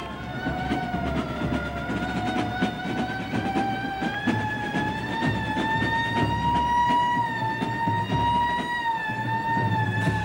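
A siren wailing, its pitch climbing slowly and then falling away near the end, over the noise of a crowd in the street.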